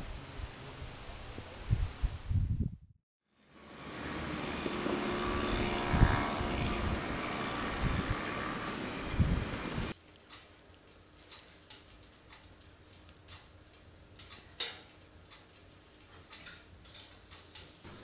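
Low wind rumble and thumps on the microphone, then after a brief gap a steady rushing noise. About ten seconds in, this gives way to a quiet wood fire crackling with scattered small pops and one louder pop.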